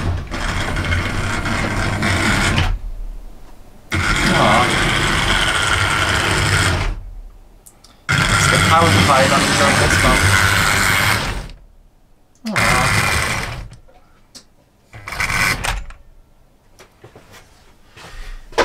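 OO gauge model trains running on the track, motors whirring and wheels rumbling. The sound cuts off abruptly and restarts several times, with shorter bursts near the end, as the controller's power supply trips onto its red overload light from time to time.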